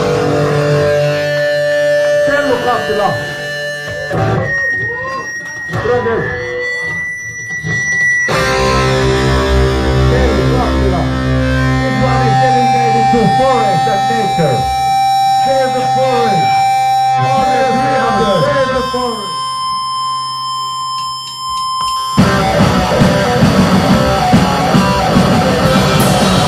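Between songs at a live punk show: distorted electric guitars feed back and drone with a held low note while a voice talks over the PA. About 22 seconds in the full band crashes back in, with loud distorted guitars and drums.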